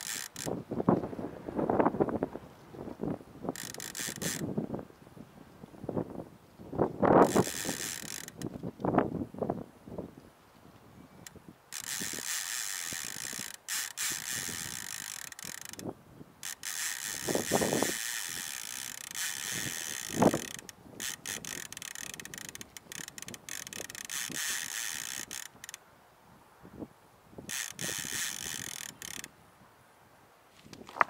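Casting reel's bait clicker ratcheting in several runs of rapid ticking, from about a second up to five seconds long, as line is pulled off a rod left in its holder; a small fish picking at the frozen skipjack bait. Lower gusts of wind on the microphone come in between the runs.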